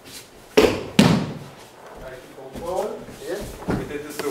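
Two sharp thuds of a thrown aikido partner hitting the mat in a breakfall, about half a second apart, followed by a few words of voice near the end.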